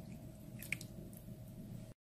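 Liquid coffee infusion pouring into a glass bowl of wet ground coffee, faint and squishy, with a few small clicks about two-thirds of a second in. The sound cuts off suddenly just before the end.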